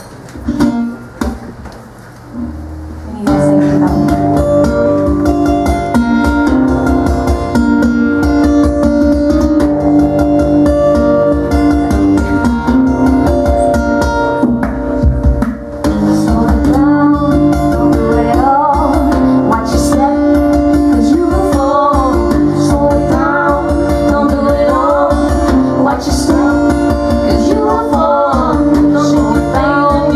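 A few handling knocks, then an acoustic guitar, played lying flat across the player's lap, starts a song with a steady pulse about three seconds in. A woman begins singing over it about halfway through.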